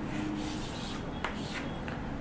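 Chalk drawing a line on a chalkboard: a soft dry scraping, with a short tick a little over a second in.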